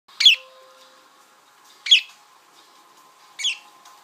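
Pet budgerigars (Australian parakeets) giving three short, sharp, high-pitched calls, about one and a half seconds apart, the last one softer.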